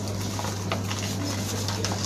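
Steady low hum under even background noise, with a few faint clicks: room tone with no distinct event.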